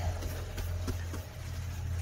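A steady low machine hum, with faint soft brushing and light taps from a soft-bristled paintbrush sweeping worms across the bottom of a plastic tray.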